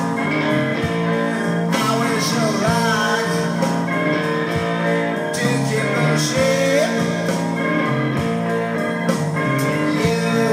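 Old-school rock record playing on a budget DigitNOW turntable system with an Audio-Technica AT3600L cartridge, heard through its built-in speakers and picked up by a room microphone: guitar and a singing voice at steady volume.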